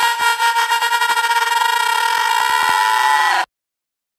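The closing sound of the track: a steady, horn-like tone of several pitches held together over a fast run of clicks that speeds up. It cuts off suddenly about three and a half seconds in.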